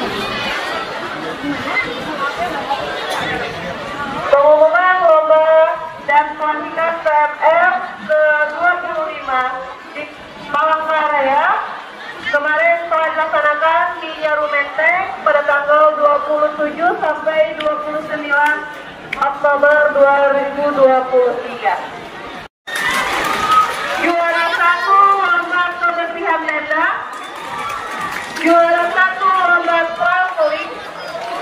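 A woman speaking into a handheld microphone, over background chatter.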